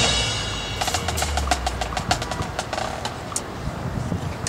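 Marching band's brass chord cuts off and rings away in the stadium. About a second in, the percussion starts a light pattern of sharp clicks and taps with a few short pitched mallet notes.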